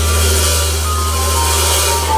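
Live band playing: a low note held steadily under sustained keyboard notes, with cymbal wash and lighter drumming.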